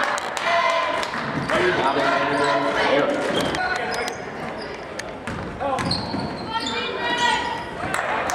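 Live game sound on a basketball court: a basketball bouncing on the hardwood floor, with sharp short knocks throughout, under several voices calling out across the court.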